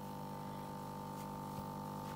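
Aquarium pump running: a steady, unchanging hum made of several held tones.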